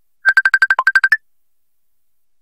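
A rapid run of about a dozen electronic telephone beeps in under a second, mostly on one pitch with a lower note and then a higher one at the end, like a phone ringtone.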